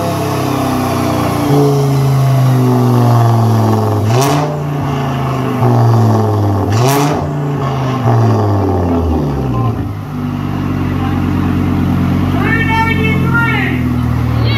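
Audi sedan's engine pulling under load on a chassis dyno, with two sharp cracks about four and seven seconds in. It lets off around nine seconds in and drops to a steady, lower hum, with a voice near the end.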